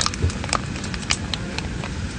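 A quick run of about nine sharp, unevenly spaced clicks and taps over the steady low drone of an airliner cabin.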